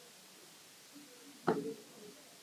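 Quiet room tone in a pause of speech, broken about one and a half seconds in by one short vocal sound from a man, a brief murmur.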